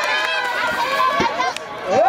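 Many young voices shouting and calling out at once during a baseball play, long held calls overlapping one another. They dip briefly near the end and then surge again.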